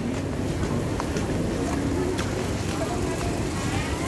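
Open-air street market ambience: indistinct chatter of shoppers and stallholders over a steady street hum, with a few small clicks and knocks.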